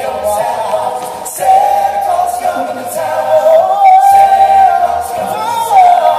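Male a cappella group singing live into microphones, several voices in close harmony with no instruments, holding a long sustained note through the middle.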